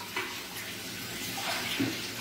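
Kitchen tap running steadily into a stainless-steel sink as work utensils are rinsed under it.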